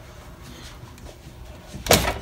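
Basket drawer of a Cosori 5.8-quart air fryer coming unlatched and being pulled open, with one loud clunk near the end.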